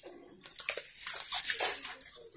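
Metal melon baller scooping balls out of a ripe watermelon wedge: soft, irregular wet scraping of the juicy flesh.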